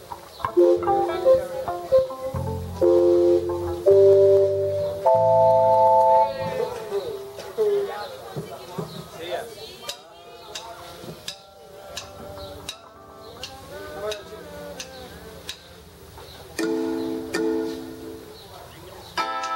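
Electric band instruments warming up: held chords with bass notes under them, played in short blocks for the first six seconds, then quieter scattered notes, and another brief pair of chords near the end.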